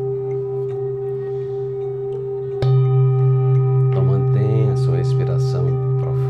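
Large Tibetan singing bowl ringing with a steady hum of several tones. A little under halfway through it is struck again: a sharp hit, after which the low hum swells louder and rings on.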